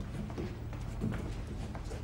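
Boot footsteps and shuffling on a hard floor as several people walk out of a room: scattered, irregular knocks over a steady low hum.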